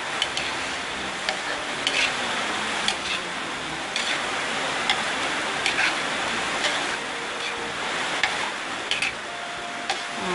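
Chicken and mixed vegetables sizzling in a wok while a metal spatula stirs and tosses them, clicking and scraping against the pan about once a second.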